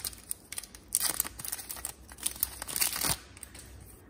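Wrapper of a 2015-16 Upper Deck Series 1 hockey card pack being torn open and crinkled by hand, in a run of sharp crackles. The crackling stops about three seconds in.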